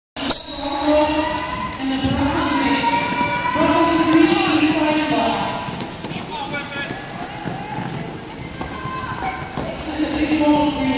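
Several voices calling and shouting over one another, drawn out and echoing in a large sports hall, with no words that can be made out. They are loudest in the first half and die down after about six seconds.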